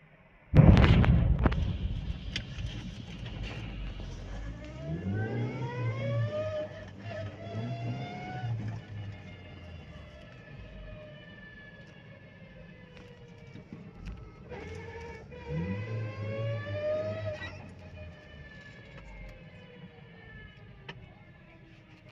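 Gas tanker explosion: a sudden loud blast about half a second in, its rumble fading over several seconds. Then a car engine accelerates twice, its pitch rising steadily each time.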